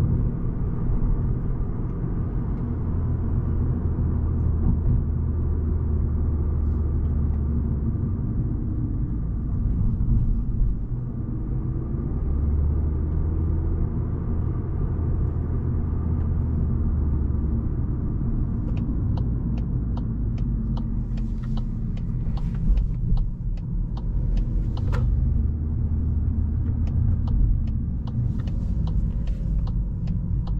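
In-cabin sound of a Volkswagen Golf 8 driving at town speeds, its 1.5 TSI four-cylinder petrol engine and tyres making a steady low rumble that swells in stretches under load. From about two-thirds of the way through, a turn signal ticks at an even pace.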